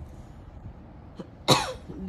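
A single short cough from a person, about one and a half seconds in.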